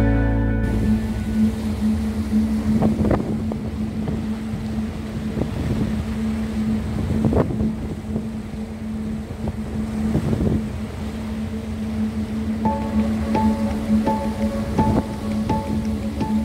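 A ferry's engine hums steadily under a wash of water and wind noise on the microphone. About three-quarters through, a light mallet-percussion tune of short repeated notes comes in.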